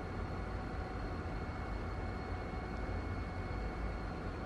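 Steady low hum of reef-aquarium pumps and circulating water, with a faint, steady high whine above it.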